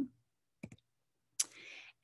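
A few faint clicks from the presenter's computer as the shared slide is advanced, then a short soft hiss near the end.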